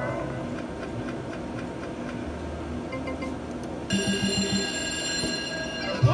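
Video slot machine reels spinning with a fast, even ticking and electronic tones. About four seconds in, a bright sustained electronic jingle with a pulsing beat starts: the machine's award sound for triggering its prime-spins bonus.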